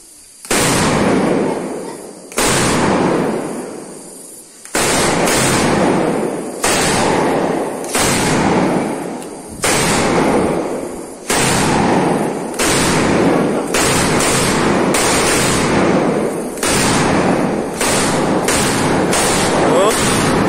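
A string of Indonesian firecrackers (mercon) more than 7 metres long going off in a rapid, continuous chain of bangs, starting about half a second in, with sudden loud surges every second or two.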